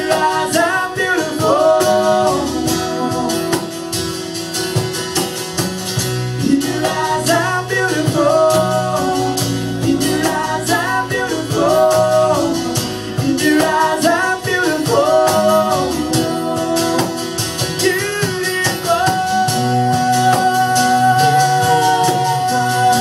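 A live gospel song on acoustic guitar with a sung melody over it, ending in a long held note.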